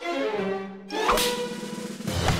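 Orchestral cartoon score: a phrase that falls in pitch, then a sharp whoosh about a second in, followed by held notes.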